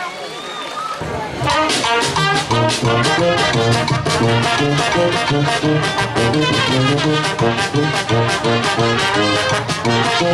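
A brass band of trumpets, trombones and tuba, with saxophone, bass drum and snare, strikes up about a second in and plays a lively tune over a steady beat.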